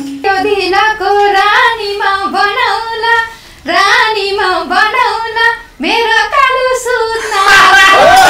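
A woman singing a Nepali dohori verse solo with the instruments stopped, in three phrases with short breaks between them. The band's music comes back in near the end.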